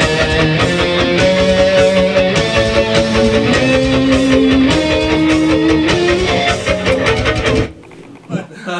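Heavy metal music led by distorted electric guitar: a slow melody line of held notes over fast picked rhythm. It stops abruptly near the end.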